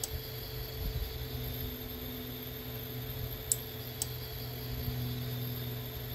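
Steady low electrical hum from a powered AC servo drive and motor test bench, with two faint sharp clicks about half a second apart a little past the middle.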